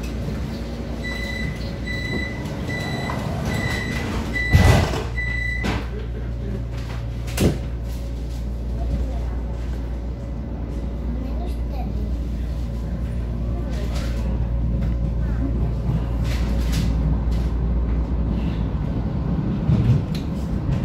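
Interior of a Vienna U-Bahn Type V metro car at a station: the door-closing warning sounds as about six high, evenly spaced beeps, and the doors shut with a loud thump near the end of them. A second sharp knock follows a few seconds later, and the train's running noise then builds slowly over the steady low hum as it pulls out.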